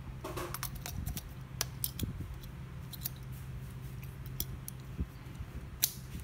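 Small plastic clicks and handling noises as a battery is fitted into a Magicsee Z2 Pro action camera's battery compartment, with the loudest click near the end as the compartment door snaps shut.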